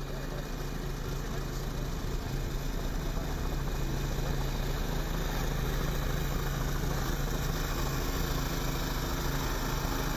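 A motor running steadily, a constant low hum under an even hiss, heard over an open outdoor field feed.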